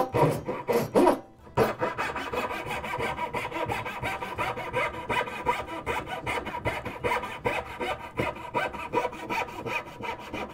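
Veritas 20 tpi fine-cut dovetail saw cutting straight down through a dovetail pin, a rip cut along the grain of the board. A few separate strokes, then from about a second and a half in a quick, steady back-and-forth of short rasping strokes as the saw works down from the starting kerf toward the marking-gauge line.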